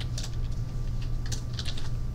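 Irregular clicking of keys typed on a computer keyboard, in a few short runs of keystrokes, over a steady low hum.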